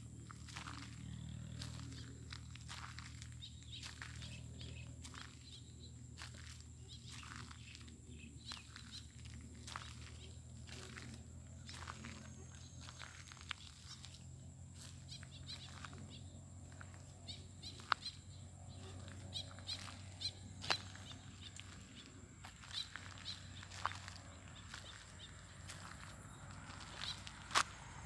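Faint evening field ambience: a steady high insect drone over a low hum, with scattered soft clicks that come more often in the second half, typical of footsteps on dry, plowed clods.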